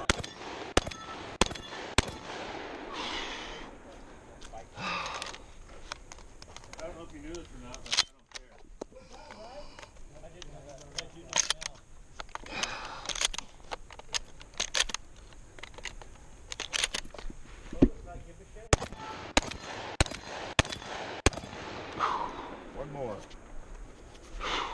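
Pump shotgun being reloaded by hand from its side-saddle shell carrier: a run of sharp clicks and snaps as shells are pushed into the tube magazine, with gunshots going off on the range.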